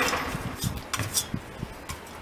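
Fingers picking sprouted sunflower seeds out of a stainless-steel colander: a short rustle at the start, then a string of small clicks and taps against the metal.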